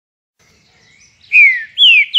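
Clear whistled notes: a faint one, then from just over a second in two loud ones, each sliding down in pitch over about a third of a second.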